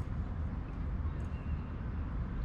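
Steady low rumble of outdoor background noise on a harbour quayside, with no distinct sound standing out.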